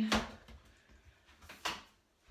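Two brief knocks, one just after the start and one about a second and a half in, with quiet between.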